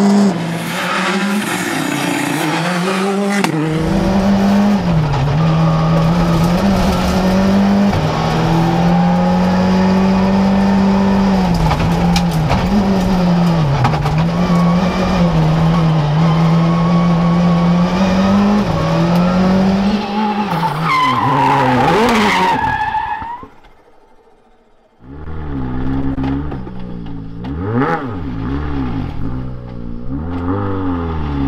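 Skoda Fabia rally car's turbocharged four-cylinder engine at high revs, heard from inside the cockpit, its pitch dipping briefly at each gear change. About 23 seconds in it drops away, and a rally car engine heard from outside follows, revving up and down.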